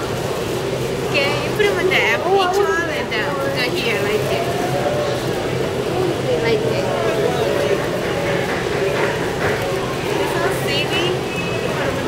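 Indistinct voices of people talking, over a steady low hum.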